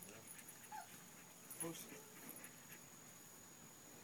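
Near silence broken by one brief, faint whine from a Belgian Malinois about a second and a half in.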